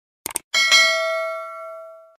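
Subscribe-button animation sound effect: a quick double click, then a bell ding with several ringing tones that fades out over about a second and a half.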